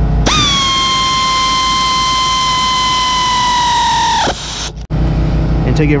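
Pneumatic air ratchet driving a 7 mm hex caliper bolt: a steady high whine lasting about four seconds that sags in pitch just before it cuts off.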